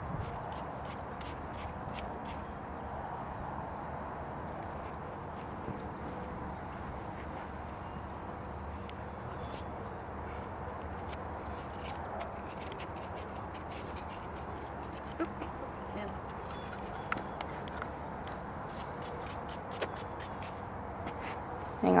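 Quiet, steady outdoor background noise with scattered faint clicks and a few soft knocks.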